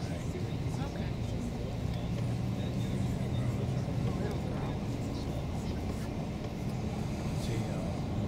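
Steady engine and road rumble heard from inside a moving bus, with indistinct voices in the background.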